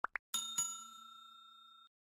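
Subscribe-button animation sound effect: two quick rising pops, then a bell struck twice that rings on for about a second and a half before cutting off abruptly.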